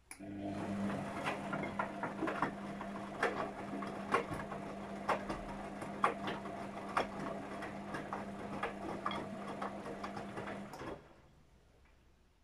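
Luxor WM 1042 front-loading washing machine's drum motor running, turning wet laundry through water in the drum during a rinse: a steady hum with irregular splashes and slaps from the tumbling clothes. It starts right away and stops about eleven seconds in.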